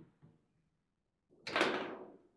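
Table football play: a faint knock at the start, a pause, then one loud sharp knock about one and a half seconds in, as the ball is struck hard by a rod figure or hits the table's wall, ringing out briefly.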